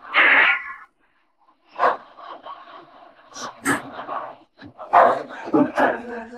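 A dog barking several times in short, irregular bursts.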